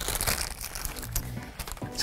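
Foil blind-bag packaging crinkling and crackling in the hands as the bags are torn open and the small figures are taken out.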